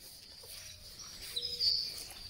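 Small birds chirping and twittering over steady garden ambience, with the loudest high chirp about one and a half seconds in.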